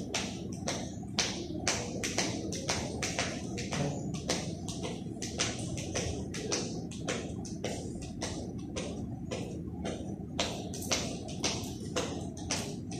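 A speed-jump rope whipping round and ticking against a tiled floor in a fast, even rhythm of about three strokes a second.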